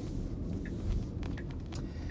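Low, steady road and tyre rumble inside a Tesla's cabin as the electric car rolls slowly through a turn, with a few faint ticks and no engine sound.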